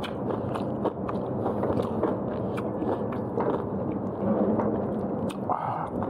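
A person chewing mouthfuls of cooked pork leg close to a clip-on microphone, a steady run of small wet mouth clicks over chewing noise.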